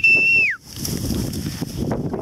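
One short whistle blast, a steady high note held about half a second that drops in pitch as it trails off. After it comes a steady rush of wind on the microphone.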